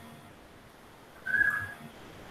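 A single short, steady, high whistle-like tone lasting about half a second, a little past the middle, over faint room noise.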